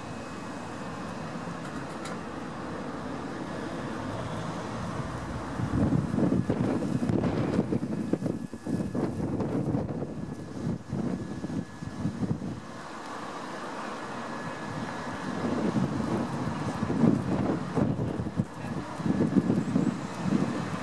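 Steam locomotive working as it pulls away, heard under gusts of wind buffeting the microphone, which come in heavy rumbles from about five seconds in and again in the second half.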